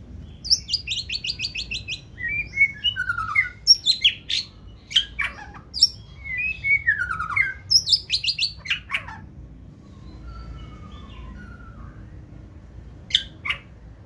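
Male white-rumped shama singing: a fast run of repeated sharp notes, then loud, varied whistles and sharp downward-slurred notes for about nine seconds. A quieter phrase follows, and one sharp note comes near the end.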